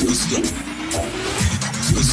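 Dubstep: a synth bass sliding up and down in pitch over a drum beat, with a slowly rising synth line.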